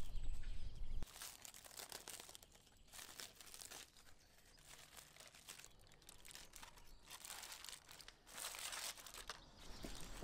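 Aluminium foil crinkling and rustling as a foil-wrapped parcel is peeled open by hand, with a louder burst of rustling near the end. A low rumble stops about a second in.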